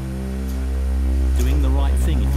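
A low, steady synthesizer drone held as one sustained note, swelling slightly, with a voice starting to speak about one and a half seconds in.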